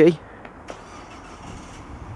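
Faint, steady rush of a passing car on a nearby road, starting just under a second in, after a man's voice trails off.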